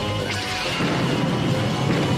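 Cartoon laser-cannon blast effects with crashing impacts over background music, a sharp hit about a third of a second in and a heavy rumble building from about a second in.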